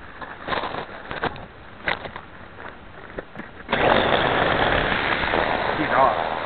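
Scattered knocks and clicks, then, nearly four seconds in, a small quadcopter's motors and propellers come in suddenly as a loud, steady noise.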